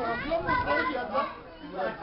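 Several people talking over one another, children's voices among them.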